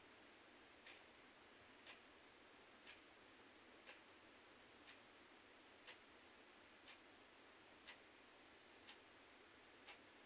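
A clock ticking faintly, one tick a second, over a steady hiss.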